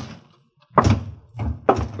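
Radio-drama sound effect of a door shutting: a single thud about three-quarters of a second in, after a brief silence.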